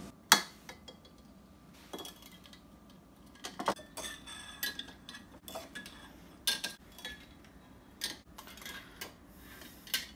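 Metal kitchen tongs clinking and tapping against glass mason jars as eggs are lowered into jars of liquid dye. The clinks come at irregular intervals, several seconds apart, and a few leave a short glassy ring.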